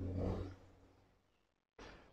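Near silence, after a faint short noise in the first half second.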